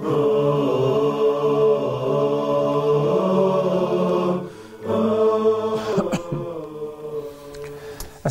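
An unaccompanied vocal nasheed jingle: voices singing long held notes with no instruments, breaking off briefly about four and a half seconds in and growing softer near the end.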